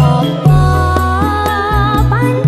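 Campursari koplo music: a held, slightly wavering melody line over a steady bass and regular drum hits.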